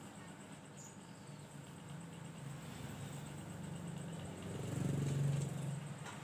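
A low engine hum that swells to its loudest about five seconds in and then fades, as of a vehicle passing.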